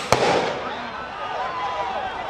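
A tear gas canister goes off with a single sharp bang just after the start, over a crowd of people shouting.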